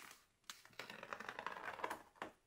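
A sheet of heavy Arches watercolour paper crackling and rustling as it is lifted and flexed by hand. A short click comes first, and the dense crackle starts about half a second in.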